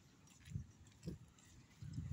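Walking footsteps of the person filming on a paved pavement: dull low thuds, one about half a second in, another about a second in, and a louder pair near the end, over faint street background.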